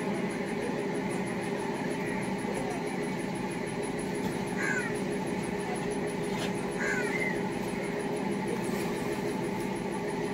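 A steady low mechanical drone, like a running engine, with a crow cawing twice, about five and seven seconds in.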